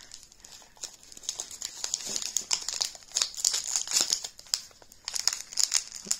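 Foil blind-box wrapper being crinkled and handled in the hands, an irregular run of sharp crackles as the packet is checked and opened.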